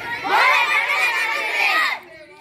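A crowd of schoolboys shouting a slogan together, many voices rising and falling in unison for about two seconds before breaking off sharply.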